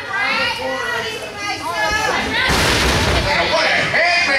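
Crowd voices and children shouting in a large hall, then about two and a half seconds in a heavy boom as a wrestler's body lands on the wrestling ring's canvas, with a noisy crash lasting about a second.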